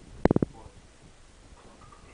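A quick rattle of four sharp knocks, about a quarter second in, as items in a kitchen cupboard are handled and knocked together.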